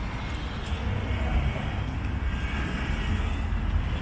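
Steady low rumble with an even hiss of outdoor background noise, with no distinct events.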